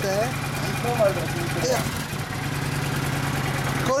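Kawasaki Vulcan 900 Classic's V-twin engine idling steadily with an even low throb. A voice talks briefly over it in the first couple of seconds.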